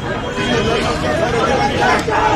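Speech only: people talking amid crowd chatter.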